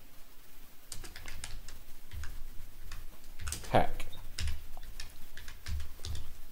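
Typing on a computer keyboard: an irregular run of key clicks as a short phrase is typed.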